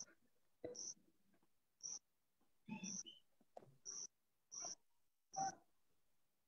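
Near silence on an open video-call line, broken by about ten faint, short blips of background sound that cut in and out.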